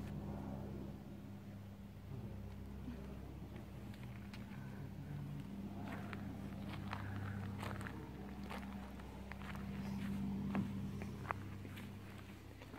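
Faint, steady low hum, with scattered light clicks and taps from about four seconds in.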